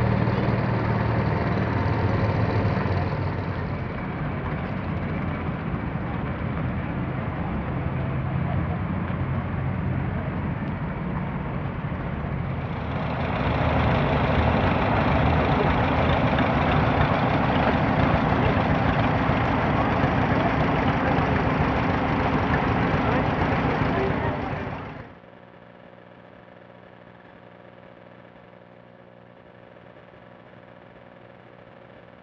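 Antique tractor engines running, with people talking. From about 13 s a louder, steadier engine runs under load, driving machinery by a flat belt. It cuts off abruptly about 25 s in, leaving a much quieter low hum.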